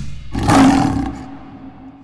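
A lion's roar sound effect: a single roar, loudest about half a second in, then fading away.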